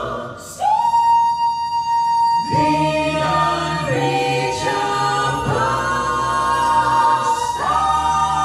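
A vocal ensemble singing into microphones. After a brief pause, one voice holds a long high note, the rest of the group comes in underneath about two and a half seconds in, and the chord changes twice near the end.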